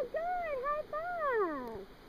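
A young child's wordless, sing-song vocal sound: a couple of short arching notes, then one long note that rises and slides down in pitch.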